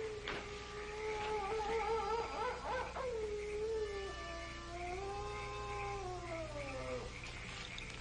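A long canine howl: one drawn-out note that wavers at a steady pitch for about three seconds, then rises and falls before sliding down in pitch and fading out about seven seconds in.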